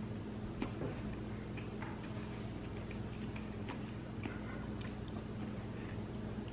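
A person chewing a mouthful of cooked cauliflower, sausage and cheese, faint, with scattered small mouth clicks over a low steady hum.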